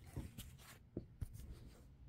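Faint handling of paper photo prints: a few brief soft rustles and taps as the prints are held and moved about on a cloth-covered table.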